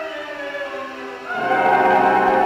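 Operatic singing with orchestra, holding long notes that swell louder about a second and a half in.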